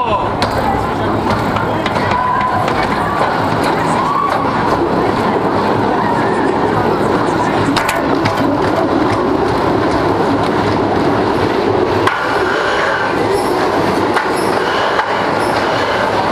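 RCCA/Premier Rides wooden roller coaster train rolling along the final brake run into the station: a steady rumble of wheels on the timber track with occasional knocks. Riders' voices sound over it.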